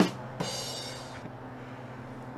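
A comedy rimshot sting ("ba-dum-tss"): two quick drum hits, the second about half a second after the first, then a cymbal that rings for under a second. It marks the punchline of a joke.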